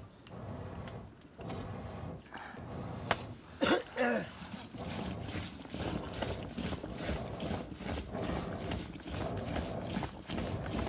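Wooden churning stick in a pot of curd, spun back and forth by a cord wound around its shaft, making rhythmic swishing and knocking strokes at about three a second: churning the curd to separate butter for ghee. Near four seconds in a brief, loud vocal sound falls in pitch, after a few sharp clicks.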